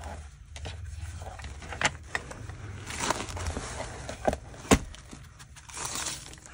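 Scattered light taps and clicks from handling a paintbrush and an old hardback book, the sharpest a little before the end, with the dry rustle of the book's paper pages being turned near the end.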